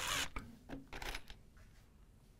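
A short rustle, then a few small clicks and taps as screws and an impact driver are handled at a wooden beam, with a screw being set by hand into the wood.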